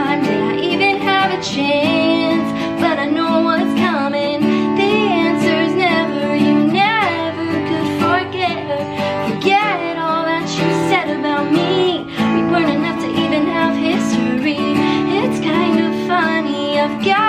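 A woman singing a slow song with wavering held notes while strumming an acoustic guitar.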